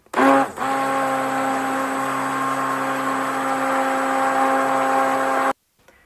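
Electric hand mixer (cake mixer) running at a steady pitch, its beaters whipping a melted soap mixture until it turns creamy. It starts suddenly and cuts off about five and a half seconds in.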